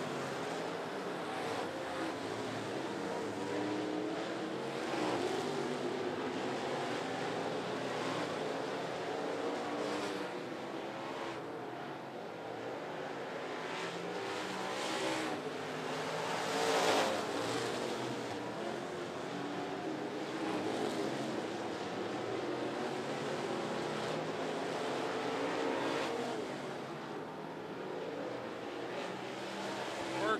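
Several dirt-track stock cars racing laps, their engines running hard together in an overlapping, rising and falling drone. The engine sound swells as cars pass near, and is loudest a little past halfway.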